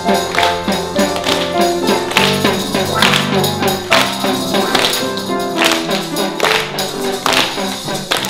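Upright piano playing a waltz while an audience claps and taps children's percussion instruments in rhythm with it.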